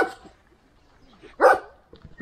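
Romanian Raven Shepherd dog barking: the end of one bark right at the start, then a single short bark about one and a half seconds in.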